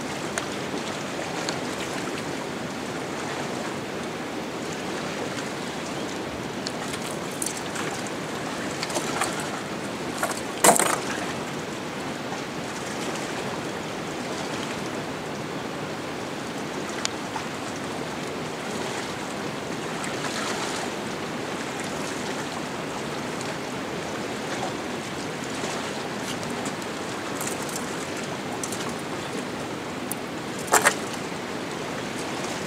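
Steady rush of flowing river water, with a few faint clicks and one sharper click about eleven seconds in.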